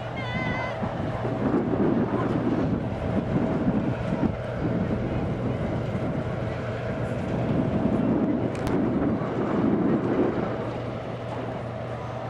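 Wind rumbling on the camcorder's microphone in gusts, over a steady low hum.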